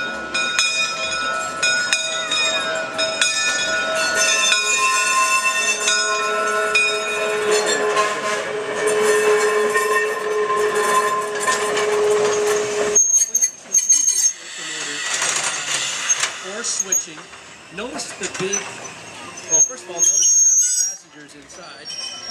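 Small GE electric switch locomotive rolling past with a steady high-pitched whine of several tones, whose pitches shift about four seconds in. The whine cuts off suddenly about two-thirds of the way through, leaving quieter crowd chatter.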